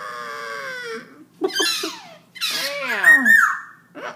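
Black-throated laughingthrush singing: a held note for about a second, then loud sliding calls that sweep up and fall, the loudest a little past halfway.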